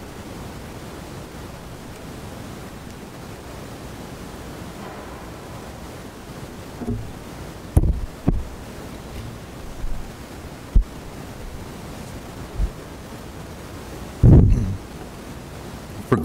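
Steady hiss of room noise picked up by the church microphones, with a few scattered soft knocks and a louder low thud about two seconds before the end.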